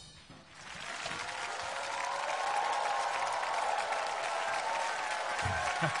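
Studio audience applauding and cheering. It swells up over the first second after a brief lull and then holds steady.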